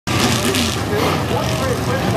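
Engines of several limited modified dirt-track race cars running together in a pack, a steady low drone, with a voice talking over it.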